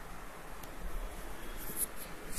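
Faint scratchy rustling over low room noise, with a short hissy scrape near the end.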